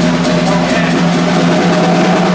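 Rock band playing live: drum kit with electric guitars and bass, held guitar notes over steady cymbal and drum hits.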